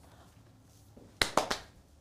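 Three quick, sharp clicks about a second in, from hands working a cutting mat against a Cricut Explore cutting machine, over faint room tone.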